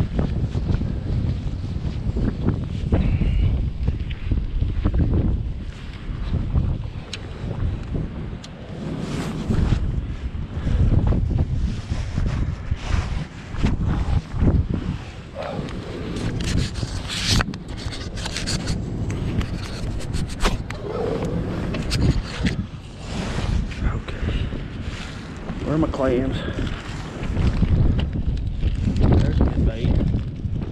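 Wind rumbling on a body-worn camera's microphone. From about a third of the way in come many short clicks, knocks and rustles of fishing tackle and clothing being handled.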